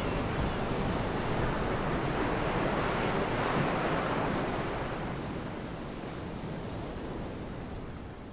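Ocean surf breaking and washing on a beach, a steady rush of waves that fades out gradually over the second half.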